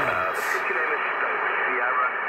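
Radio-style hiss confined to a narrow band, like static between stations, with faint garbled traces of voice, laid on as an audio effect. It holds steady throughout.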